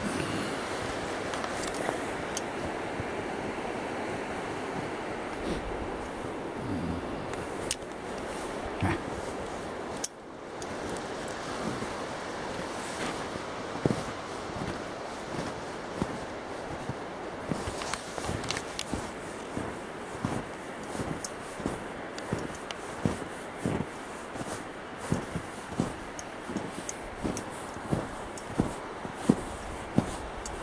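Shallow creek water running over rocks between ice and snow, a steady rushing noise. About ten seconds in it breaks off, and footsteps in snow follow at an even walking pace, about one step a second.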